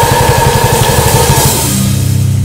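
Brutal death metal: distorted guitars over very fast bass-drum strokes, with a high note held above them. About three-quarters of the way through the drumming stops and a low distorted chord rings on.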